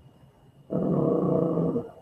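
A man's voice holding one drawn-out hesitation sound, a steady "ehhh", for about a second, starting partway in.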